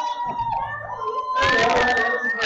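Excited children shouting and calling out over one another, with long drawn-out cries and a louder burst of voices about one and a half seconds in.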